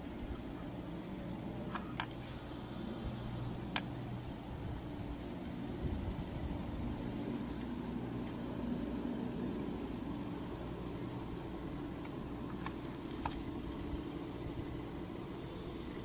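A steady low mechanical hum, such as a distant engine running, with a few faint clicks.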